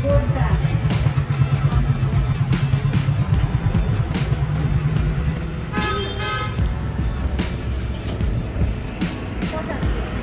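Road traffic with a motor vehicle's engine running close by, and a vehicle horn sounding once, briefly, about six seconds in.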